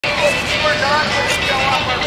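A person's voice speaking at a distance, thin and lacking bass, buried in heavy hiss from a very quiet recording that has been boosted a lot.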